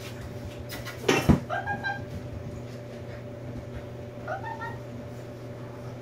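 A loud sudden knock about a second in, followed by an Australian Cattle Dog–Feist mix puppy giving short rising whines, once just after the knock and again past four seconds.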